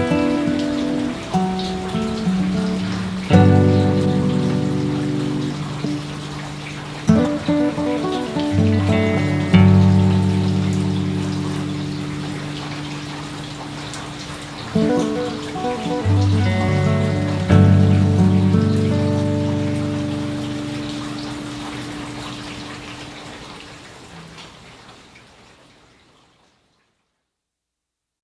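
Slow meditation music: chords struck every few seconds and left to ring out, fading away to silence near the end.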